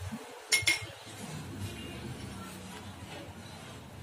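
Metal pestle striking inside a small metal mortar while pounding spices: two sharp ringing clinks close together about half a second in.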